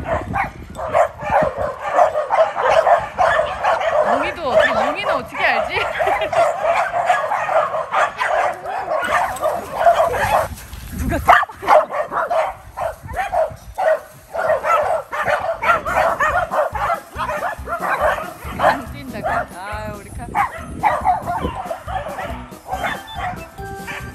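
A pack of dogs, mostly corgis, barking and yipping together in a dense overlapping chorus, with a brief lull about ten seconds in and sparser barks toward the end.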